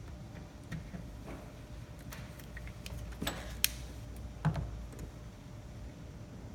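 Light handling noise of tools and parts during a fuse block install: scattered small clicks and knocks, with a sharp click about three and a half seconds in and a couple of duller knocks around it.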